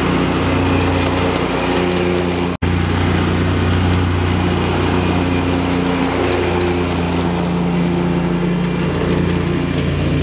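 Stand-on commercial lawn mower's engine running steadily while it mows overgrown grass. The sound cuts out for an instant about two and a half seconds in.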